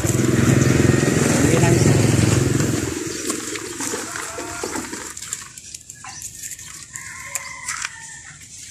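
A passing vehicle's engine running close by, loud for the first three seconds and then fading away.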